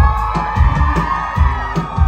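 Live band music with a steady drum beat, keyboard and acoustic guitar, with audience members whooping and cheering over it.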